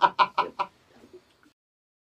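A man laughing out loud in quick, evenly spaced 'ha-ha' bursts, about five a second. The laughter fades out within the first second, and the sound cuts to dead silence about a second and a half in.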